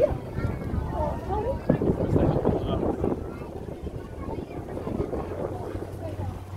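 Wind buffeting the microphone on a boat at sea, strongest from just under two seconds to about three seconds in, then a quieter steady rush. A few voices briefly about a second in.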